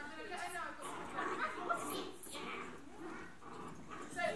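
Indistinct voices of several people in a large, echoing room, with a dog vocalising among them.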